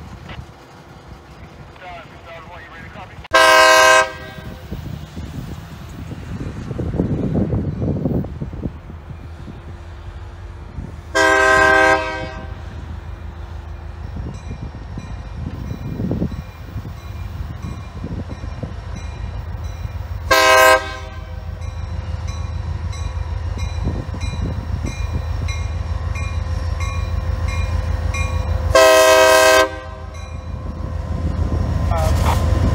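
Florida East Coast Railroad diesel locomotive sounding its horn for a grade crossing in the long, long, short, long pattern. Under the blasts the diesel's low rumble grows steadily louder as the train approaches.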